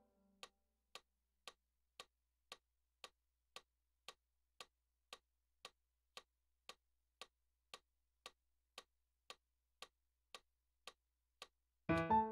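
Faint metronome clicking at an even pace of about two clicks a second, after the last keyboard note dies away at the start.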